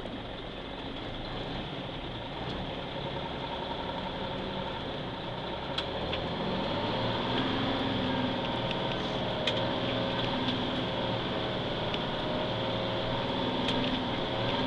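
1980 GMC Astro cab-over truck's diesel engine heard from inside the cab as the truck gets under way, running steadily and growing louder from about six seconds in, with a few sharp clicks.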